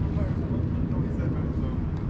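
Low, choppy rumble of wind buffeting the microphone, with faint voices in the background.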